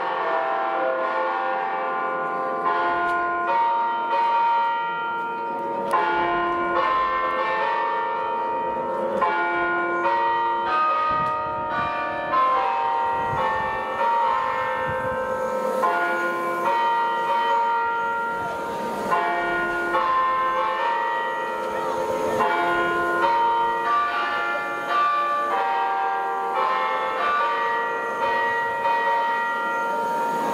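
Church bells ringing a festive peal: several bells of different pitches struck in close, overlapping succession, each tone ringing on.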